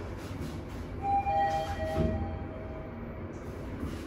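Mitsubishi traction elevator running with a steady low rumble. About a second in, an electronic chime sounds two overlapping tones, the higher first and then the lower, fading by about three seconds in.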